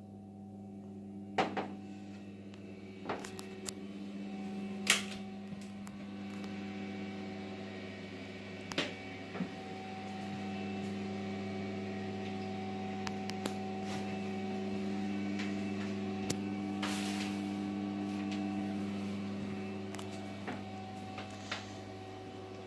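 Steady electrical hum made of several tones, with a few sharp knocks and clicks scattered through it.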